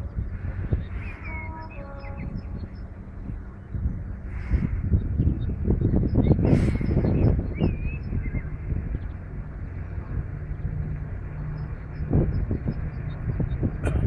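Outdoor wind rumbling and buffeting on the microphone, with scattered birdsong and a few short bird calls, one about a second and a half in and another near the middle. A faint steady low hum joins in during the last few seconds.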